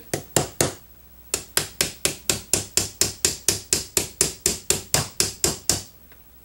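Small hammer tapping a brass punch to drive the polymer rear sight of a Smith & Wesson SD40VE pistol out of its slide: three quick taps, a short pause, then a steady run of about four or five taps a second.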